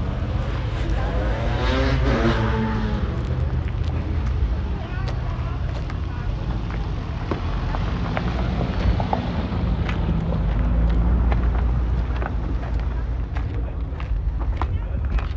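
A car engine running close by with a steady low rumble, its pitch bending up and down about two seconds in, over background voices.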